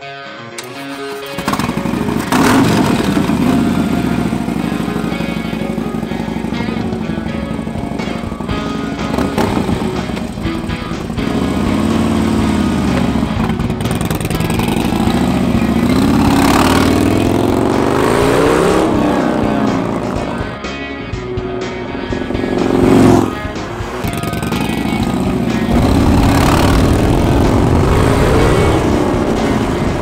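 Harley-Davidson V-twin motorcycle engine coming in loudly about a second and a half in, then running and revving through the gears, its pitch rising and falling again and again. Background music plays underneath.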